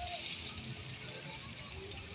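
Outdoor seaside ambience: faint, indistinct voices over a steady hiss.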